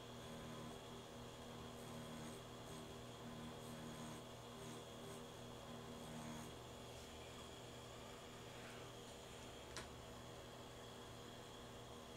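Faint steady hum of a rotary pen tattoo machine running as its needle shades fake skin, with one light click about ten seconds in.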